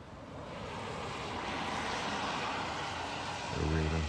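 Steady rushing noise of a passing vehicle, swelling over the first second or two and then holding; a man's voice starts near the end.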